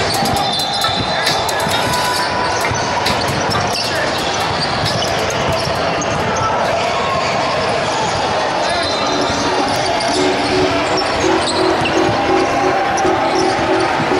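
Basketball being dribbled and bounced on a hardwood gym floor during live play, with voices of players and spectators in the reverberant hall.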